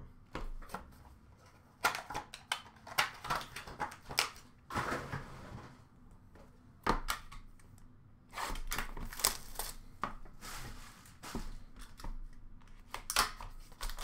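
A sealed hockey card box being handled and opened with a box cutter: its shrink wrap slit and torn, cardboard and plastic wrap crinkling, in a run of short clicks and rustles with a denser crinkling stretch past the middle.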